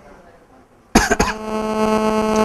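A man coughs about a second in, two or three short sharp bursts. Right after, a steady buzzing hum with many overtones sets in and holds.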